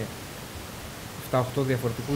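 A man speaking Greek, starting about a second and a half in after a pause filled only by a steady hiss.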